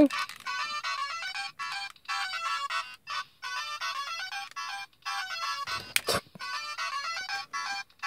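Bandai DX Climax Phone transformation toy playing a beeping, ringtone-like electronic melody through its small speaker as its flip screen is opened. A short, louder sound-effect burst comes about six seconds in.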